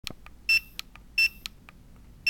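Handheld 2D barcode reader sounding two short, high beeps about three-quarters of a second apart as it reads a direct-part-mark data-matrix code, with a few light clicks between them: the reader's good-read beeps.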